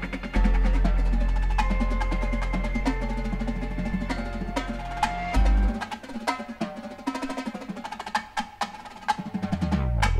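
Marching drumline playing: rapid stick strokes on tenor drums (quints) and snare drums. For the first five seconds or so they play over a held low bass note and higher held notes; the bass cuts off about five and a half seconds in, leaving mostly the drums.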